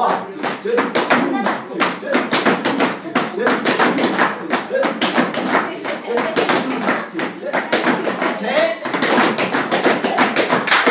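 Gumboot dancing: hands slapping rubber wellington boots and boots stamping on a tiled floor in a quick, uneven run of sharp slaps, about three or four a second, with a voice counting the beat at the start.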